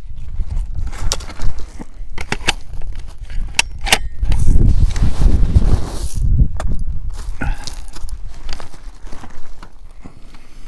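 Handling noise from a prone shooter settling in behind a rifle on gravel: scattered sharp clicks and rustles, with a low rumble lasting over a second in the middle.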